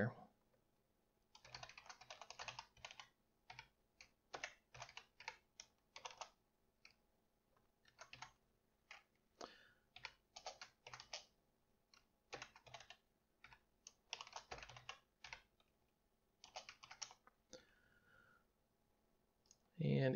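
Computer keyboard typing in short runs of quick keystrokes, broken by brief pauses.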